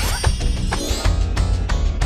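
Effects-processed cartoon music with a fast, steady beat, opening with a quick rising glide.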